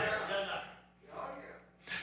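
Faint voice sounds in a pause between spoken phrases: a soft, trailing vocal sound in the first half-second, then a short breath-like sound, with a voice starting up again right at the end.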